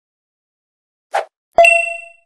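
Logo sound effect: a brief noisy swish about a second in, then a sharp metallic ding that rings out and fades quickly.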